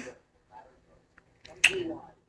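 A woman's voice goes quiet after a held 'um'. About one and a half seconds in comes a sharp click with a brief faint voiced sound, as she starts to speak again.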